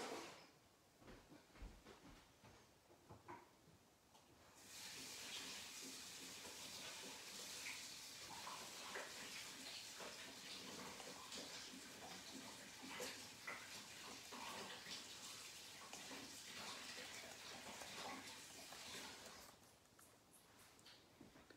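Faint water running steadily from a kitchen tap, turned on about five seconds in and off just before the end, with light clicks and knocks of handling over it. A few small knocks come before the water starts.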